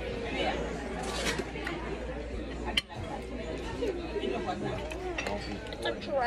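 Background chatter of many voices in a restaurant dining room, steady and unclear, with one sharp clink about three seconds in.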